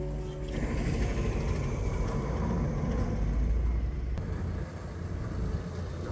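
Small car ferry's engine running under way, a steady low rumble, after guitar music stops about half a second in.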